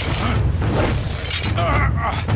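Animated-show fight sound effects: a dense crashing and shattering clatter over a low rumble, with a man grunting in effort near the end.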